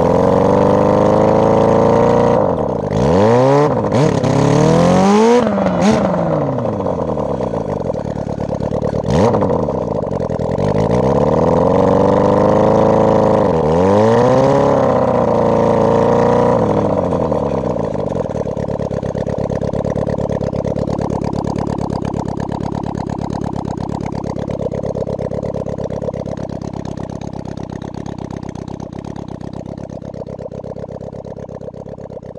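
A 600 cc Suzuki motorcycle engine in a kart, revved up and down several times over the first half. It then settles into a steady, even running note that slowly grows quieter toward the end.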